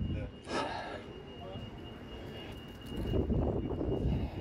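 Town-centre street ambience: a short breath-like rush about half a second in, a faint steady high tone, and a louder low rumble building near the end.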